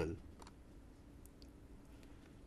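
Near silence: quiet room tone with a faint low hum and a few faint short clicks.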